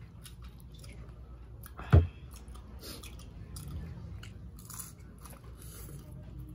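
Close-miked mealtime sounds: chewing, with small clicks and scrapes of a spoon against a bowl, and one loud thump about two seconds in.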